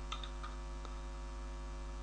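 Steady electrical mains hum in the recording, with a few faint computer keyboard clicks near the start and one about a second in as a compile command is typed.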